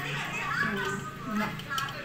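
Indistinct voices in the background, children's voices among them.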